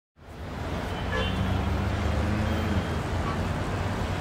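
Road traffic noise fading in: a steady low rumble of vehicles with a held engine tone, and a short horn-like tone about a second in.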